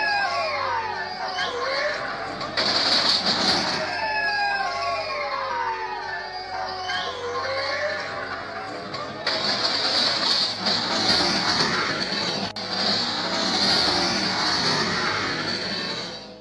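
Riders on a spinning disco-style fairground ride screaming, with many long shrieks that rise and fall in pitch, over loud ride music. From about nine seconds in, the screams blur into a denser, noisier din.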